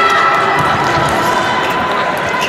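Electric fencing scoring machine sounding its steady electronic tone, several pitches together, signalling a registered hit. The tone eases off near two seconds in.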